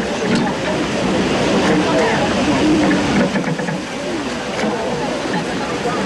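A group of people talking over one another, with no single voice standing out, over a steady background noise.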